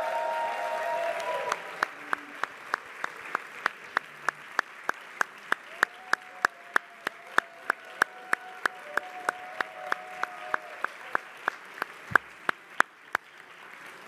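Applause from a room full of people, fuller for the first second and a half, then thinning to steady, sharp claps about three a second that stand out above the rest until near the end.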